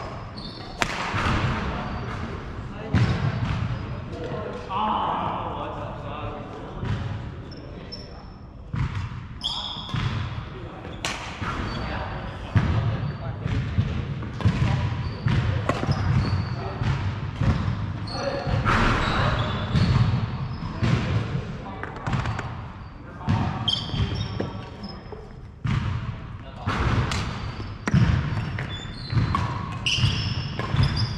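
Doubles badminton rally: rackets striking the shuttlecock in sharp cracks, with shoes squeaking and footsteps thudding on a wooden sports-hall floor, echoing in the large hall.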